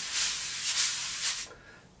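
Wire drum brushes swept across a coated drumhead, giving one continuous swishing hiss that fades out about a second and a half in.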